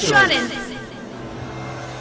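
A voice speaking for about half a second, then a steady low hum of background sound.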